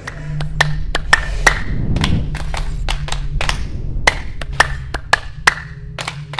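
A run of sharp percussive claps or knocks, unevenly spaced at about two to four a second, each with a brief ringing tail, over a low steady hum.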